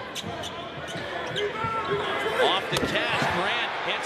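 Basketball arena crowd noise with sneakers squeaking on the hardwood court and a ball being dribbled during a half-court possession. The crowd grows louder through the second half.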